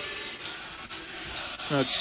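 A pause in the talk filled by a steady background hiss, with a short vocal sound from a man near the end.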